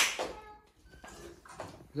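A near-quiet pause in a room: the hissy end of a spoken word right at the start, then low room tone with faint voice traces.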